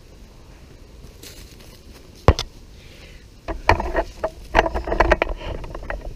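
Quiet outdoor campfire ambience with a single sharp click about two seconds in, then from about halfway through a gust of wind buffeting the microphone as a low rumble, with a run of knocks and crackles over it.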